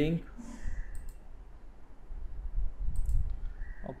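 Computer mouse clicks: two about a second in and a few more near three seconds, over a low hum.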